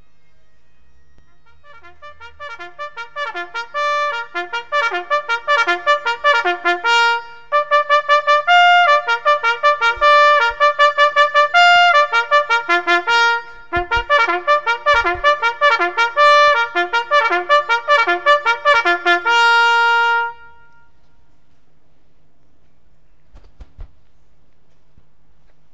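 A solo trumpet plays a farewell tune of quick notes that grows louder over the first few seconds. It pauses briefly about halfway through and ends on a long held note about 20 seconds in.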